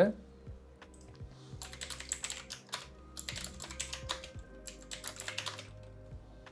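Computer keyboard typing: quick runs of keystrokes in three short bursts with pauses between, starting about a second and a half in.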